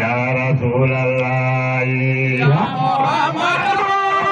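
Men's voices chanting an Islamic devotional song through microphones and loudspeakers: one long steady held note for about two and a half seconds, then the melody moves on in wavering, ornamented turns.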